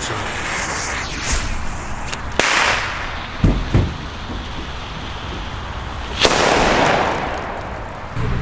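Funke Honey Badger firecracker: the lit fuse fizzes, a sharp crack comes about two and a half seconds in, and the main bang, the loudest sound, goes off about six seconds in and echoes away over a second or so.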